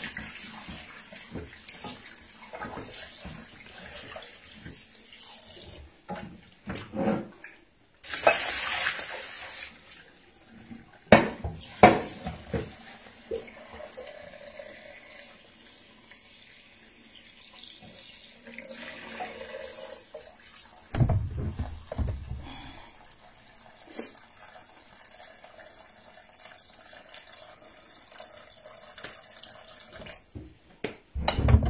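Water running and splashing in a kitchen sink as vegetables are washed, with a louder rush of water partway through. Scattered clicks and clatter of bowls and utensils, with two sharp knocks soon after the rush that are the loudest sounds, and some dull thumps later.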